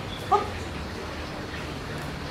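A Shiba Inu giving one short, high-pitched yip about a third of a second in, over a low steady hum.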